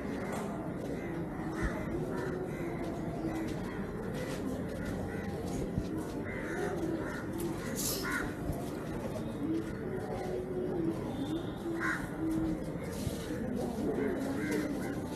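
Birds calling: crows cawing in short calls several times, mostly in the second half, and low cooing from pigeons, over a steady background hum.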